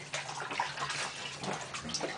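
Bath water splashing and sloshing in small, irregular splashes as hands move through it around a baby in an inflatable baby tub.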